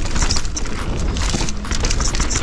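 Rocky Mountain Maiden downhill mountain bike rolling fast down a dirt singletrack: steady tyre noise on dirt and loose stones, with rapid small clicks and knocks from the bike over the bumps and a low rumble.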